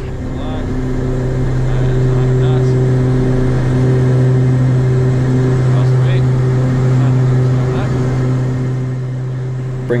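Cessna Conquest I's twin Pratt & Whitney PT6A turboprop engines and propellers at takeoff power, heard from inside the cockpit: a steady, loud, low propeller drone that swells over the first two seconds of the takeoff roll and then holds through liftoff.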